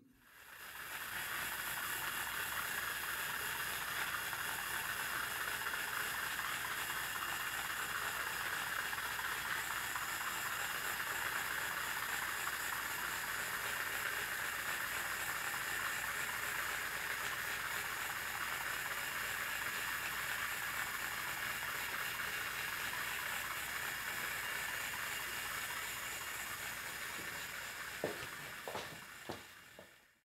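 Toy car's small battery-powered electric motor and gears whirring steadily as it drives. The sound fades in over about the first second and eases off near the end.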